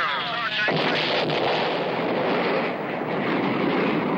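Sound effect of a rocket launching at the end of a countdown: a steady, loud rushing noise that starts suddenly just under a second in and keeps going.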